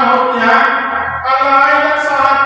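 A group of voices singing a slow hymn in long held notes, moving to a new note about a second in.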